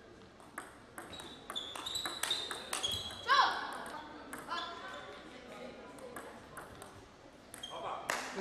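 Table tennis ball clicking back and forth between paddles and table in a quick rally, ended by a player's short shout about three seconds in. A second, quieter run of ball hits follows as the next rally is played.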